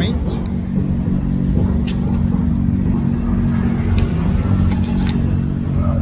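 Street traffic close by: car engines running with a steady low hum, and a few faint clicks.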